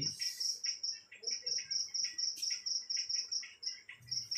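Cricket chirping: a rapid, even train of high pulses, about seven a second, breaking off briefly about a second in and again just before the end.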